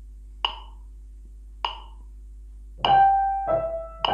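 Handheld electronic metronome clicking at 50 beats a minute, three clicks about 1.2 s apart. With the third click, about three seconds in, a grand piano comes in with right-hand eighth notes, two notes to the beat, the second lower than the first.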